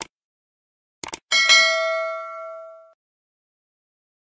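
Short mouse-click sound effects, a single one and then a quick double click, followed by a bright bell ding that rings out for about a second and a half. It is the click-and-notification-bell sound of a subscribe-button animation.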